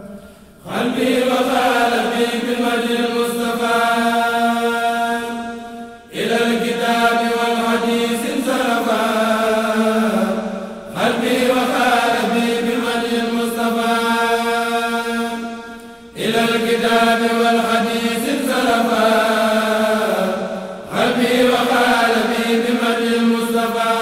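Khassida, the Mouride devotional poems, chanted by voices with no instruments, in five long held phrases of about five seconds each, separated by short breaks.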